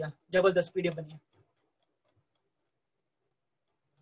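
A man's voice speaking briefly near the start, then near silence.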